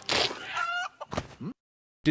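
A rooster squawking in a film soundtrack, a short high-pitched call with a rising cry after it, cut off to dead silence about a second and a half in.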